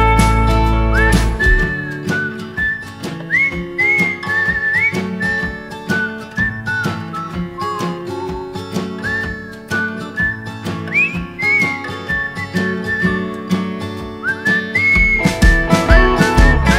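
A whistled melody that slides up into its notes, over picked guitar, in an instrumental break of a bluesy rock song. The bass and drums drop out about a second and a half in and come back just before the end.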